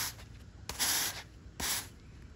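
Push broom with stiff bristles sweeping loose soil and grit across concrete: two short scraping strokes, one about a second in and one near the end.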